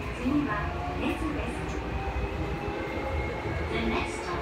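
Chiyoda Line subway train running, heard from inside the car: a steady low rumble of wheels and running gear.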